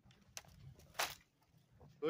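Dry dead cedar branches being handled and set down, with a small crack about a third of a second in and one louder sharp crack about a second in.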